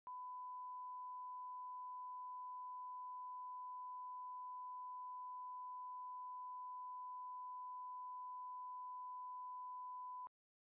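Steady 1 kHz line-up test tone played with colour bars: a single pure, unbroken beep held at one pitch.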